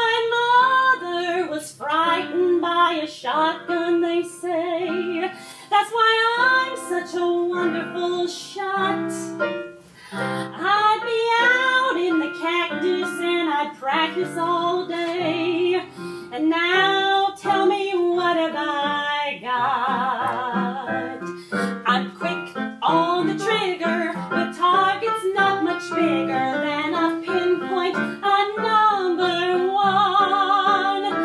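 A woman singing a song with instrumental accompaniment, her held notes wavering with vibrato.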